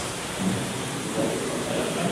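A steady rushing noise with faint voices under it.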